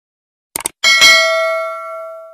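Subscribe-animation sound effect: a quick double mouse click, then a bright notification bell ding that rings on and fades slowly.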